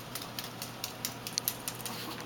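Yorkshire terrier's claws clicking irregularly on a hard floor as it trots along carrying a plush toy, the clicks coming thickest around the middle.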